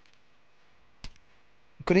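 A quiet pause with low room tone, broken about a second in by a short sharp click and a fainter second one, before a man's voice resumes near the end.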